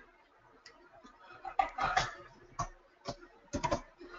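Computer keyboard keys being typed: irregular keystroke clicks, a few at first, then small quick clusters around the middle and again near the end.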